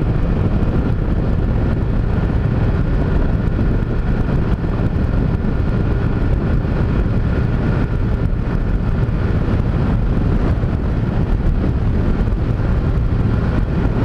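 Honda CG Titan's single-cylinder four-stroke engine running at a steady cruise on the highway, with wind rushing over the helmet-mounted camera's microphone.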